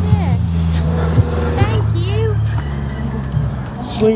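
A car's engine running close by at a stop, with music playing loudly over it. There are brief snatches of voice.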